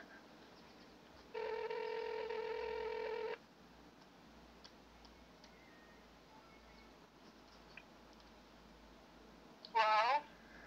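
Telephone ringback tone heard through the phone's speaker: one steady, even ring of about two seconds while the call is placed, then quiet until a brief voice near the end as the line is answered.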